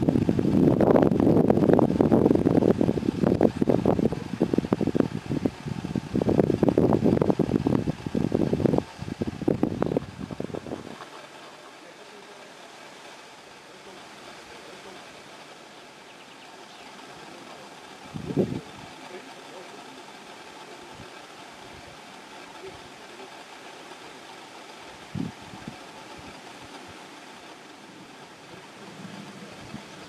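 Wind buffeting the microphone in loud, gusting rumbles for about the first ten seconds, then stopping suddenly and leaving a low steady background. Two brief thumps come later, one about halfway through and one a few seconds after it.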